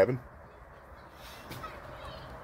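A man's voice finishes a word at the very start, then faint, even outdoor background noise with no distinct sound in it.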